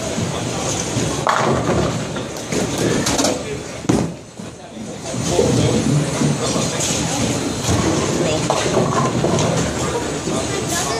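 Bowling ball rolling down the lane and hitting the pins with a sharp crash about four seconds in, over the steady chatter of a busy bowling alley.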